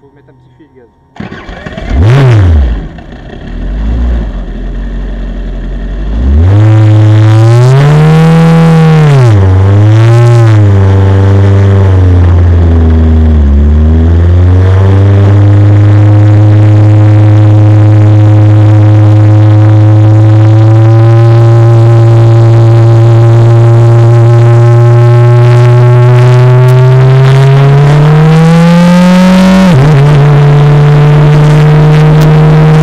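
Formule Renault 2.0 single-seater's 2.0-litre four-cylinder engine is started and revved up and down a few times. It dips as the car pulls away, then holds a steady, slowly climbing note down the pit lane, rising near the end and dropping sharply at an upshift.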